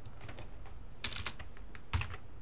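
Clicks of a computer keyboard and mouse: a quick run of clicks about a second in, and a single louder click near the end.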